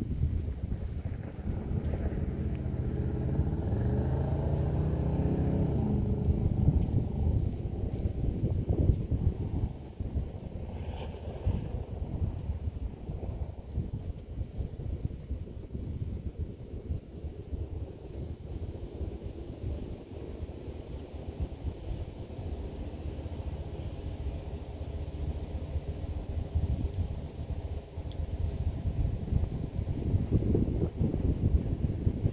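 Low, steady rumble with wind on the microphone. An engine hum rises in pitch a couple of seconds in and fades after about six seconds.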